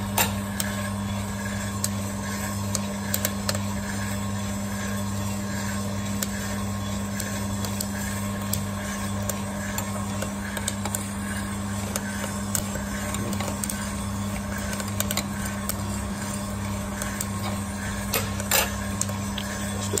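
Electric drum sample coffee roaster running with a steady motor-and-fan hum, the beans tumbling in the rotating drum with a rhythmic swish, and a few scattered sharp clicks. The beans are in their development time after first crack.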